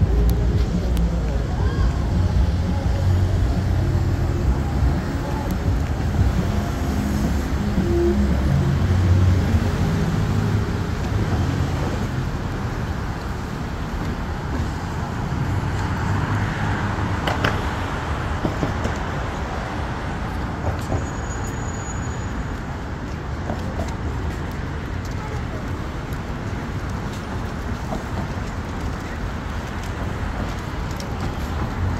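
City street traffic: cars driving past on a busy multi-lane street, a steady wash of engine and tyre noise. It is somewhat louder and deeper in the first ten seconds, then settles a little lower.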